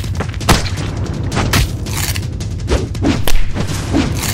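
Cartoon fight sound effects: a fast run of heavy thuds and impact hits, several a second, over a steady low rumble.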